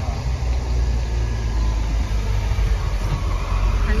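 A car's low, steady rumble, engine and road noise heard from inside the moving car's cabin, growing a little louder toward the end.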